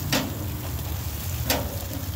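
Handling noise on a handheld phone microphone: a steady low rumble with two sharp clicks about a second and a half apart.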